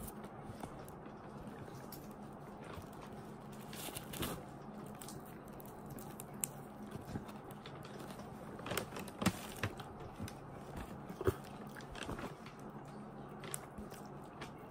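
Faint crackling and scattered sharp clicks of steamed crab shell and meat being picked apart by hand, with chewing. A faint steady hum runs underneath.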